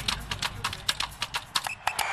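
Fast typing on a computer keyboard: a quick, irregular run of key clicks, about ten a second, over a low rumble.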